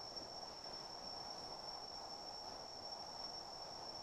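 Faint steady hiss with a thin, continuous high-pitched whine.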